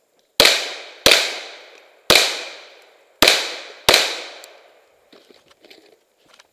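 Five gunshots fired at uneven intervals over about three and a half seconds, each trailing off in an echo that lasts about a second. Faint scuffs near the end.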